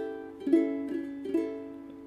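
A7 chord strummed on a ukulele: a chord rings out, then is struck twice more, about half a second and about a second and a half in, each strum fading away.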